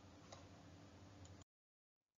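Near silence: faint room tone with a low hum and a couple of faint ticks, cutting to complete silence about one and a half seconds in.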